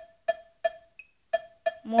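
Casio MA-150 keyboard's built-in metronome ticking fast, about three short pitched clicks a second, with one higher-pitched accent beep about a second in marking the first beat of the bar.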